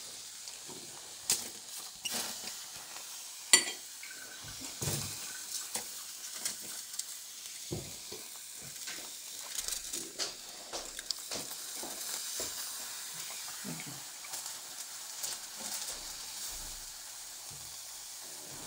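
Field mushrooms sizzling in hot fat on aluminium foil over a stovetop, with scattered clicks and crinkles of a fork scraping and turning them on the foil; the sharpest click comes about three and a half seconds in.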